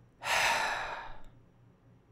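A man's sigh: one breath out through the mouth, lasting about a second and tapering off.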